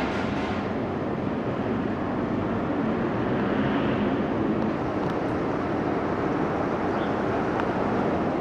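Steady city street noise: a continuous rumble of traffic.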